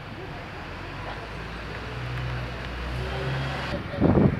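A vehicle engine running as a low, steady hum over general outdoor noise, growing louder through the second half and cutting off abruptly near the end.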